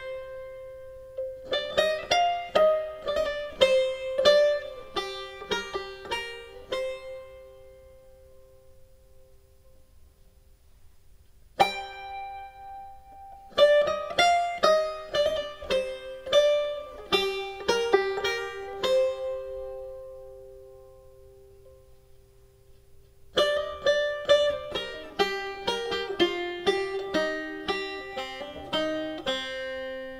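Instrumental music: a plucked string instrument plays three phrases of picked notes, each letting notes ring on and fade, with short pauses between the phrases.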